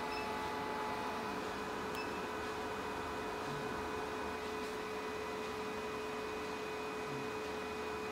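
Steady electrical hum with a fixed tone from a running diode laser hair-removal machine and its cooling system. Faint short beeps come at the start and again about two seconds in.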